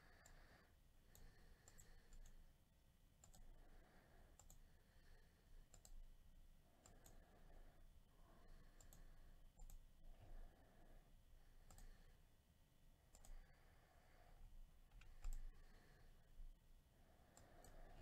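Faint computer mouse clicks, scattered irregularly about once a second, over near silence.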